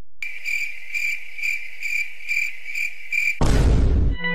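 Cricket chirping sound effect: a steady high chirp pulsing about twice a second for about three seconds, starting and stopping abruptly. Near the end a short, loud burst of noise cuts in.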